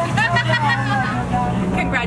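Steady low hum of a boat's engine, with people talking close by over it.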